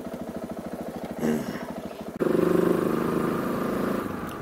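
KTM 690 Enduro R single-cylinder engine idling with a quick, even beat. About two seconds in, it gives way abruptly to a louder, steady engine note from the bike under way.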